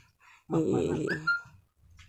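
A man's rough, breathy exhalation with a strained whining voice, about a second long, ending in a short rising squeak, as he blows out a lungful of smoke.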